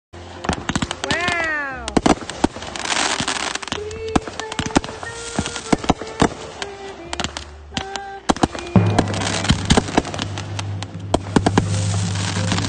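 Consumer fireworks going off: a string of sharp pops and crackles, with a falling whistle about a second in and a burst of hiss a couple of seconds later. Near the end a steady low musical tone comes in under the crackling.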